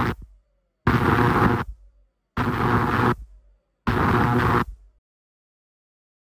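iSonic ultrasonic record-cleaner tank running its degas cycle, pulsing on and off: harsh buzzing bursts of under a second each, about every one and a half seconds. The pulsing drives the dissolved air out of the freshly filled water and cleaning solution before cleaning. It is an unpleasant noise.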